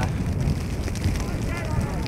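Steady low wind noise on the microphone of an open-air football ground in a snowstorm, with no distinct events.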